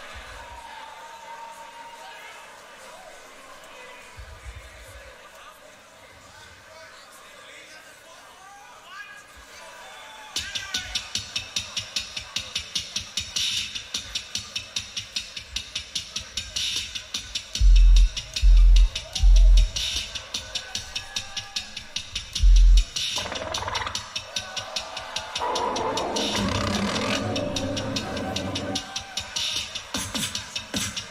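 A live beatbox loop station performance. Soft, wavering vocal tones build for about ten seconds, then a fast hi-hat-like looped rhythm cuts in sharply. Three heavy bass drops come close together a little past halfway with a fourth soon after, and a fuller vocal layer joins near the end.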